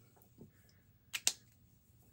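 Two sharp plastic clicks in quick succession, a little over a second in, from a felt-tip dot marker's cap being snapped shut.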